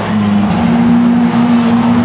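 A steady, low mechanical drone at one unchanging pitch, loud and continuous.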